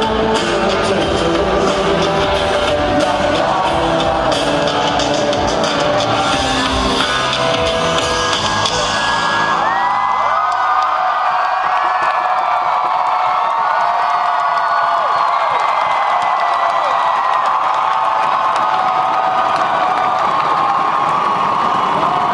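Rock band playing live through a concert PA, the song closing out about nine to ten seconds in; the crowd then cheers, whoops and yells for the rest of the time.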